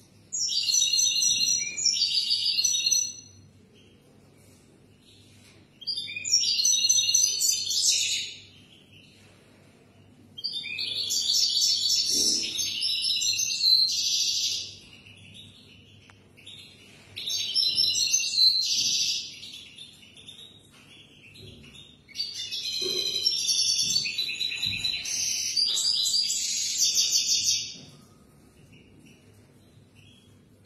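European goldfinch singing: five fast twittering song phrases of a few seconds each, the last and third the longest, separated by pauses of two to three seconds. A faint steady low hum sits under the pauses.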